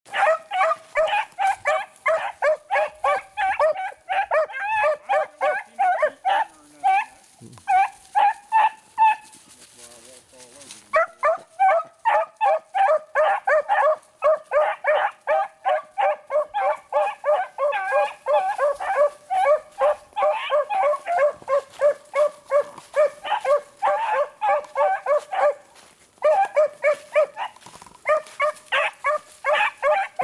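Beagle hounds baying on a rabbit's scent trail, a rapid run of short, repeated cries several a second. The cry breaks off for a couple of seconds about a third of the way in, then picks up again.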